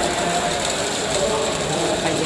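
Steady background din of a large, crowded competition hall: distant voices mixed into a constant noise, with a steady high-pitched whine.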